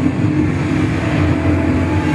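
Soundtrack of an animated video played loud through a hall's PA speakers: a steady, rumbling sustained sound with held low tones.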